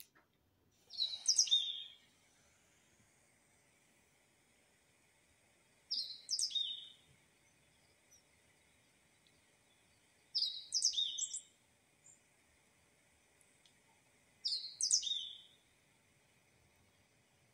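A small bird singing the same short, high phrase four times, about every four and a half seconds.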